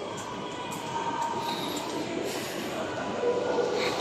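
Steady ambient hum of a large indoor shopping mall, with faint indistinct traces of distant voices or music.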